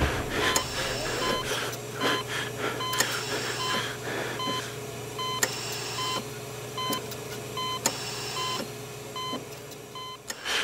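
Short electronic beeps repeating about twice a second over a steady low hum.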